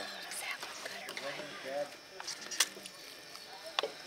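Quiet background voices, with a few sharp clicks of a carving knife and tongs against a metal sheet pan as roast pork is sliced. The loudest click comes a little past halfway and another near the end.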